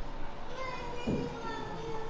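Faint children's voices and chatter from the congregation, with a brief low thump about a second in.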